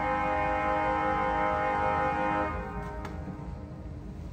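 1926 Estey pipe organ (Opus 2491) holding a steady chord on its viole d'orchestre string stop with the voix celeste, a rank tuned slightly off to give the string tone a shimmer. The chord is released about two and a half seconds in, leaving a low rumble.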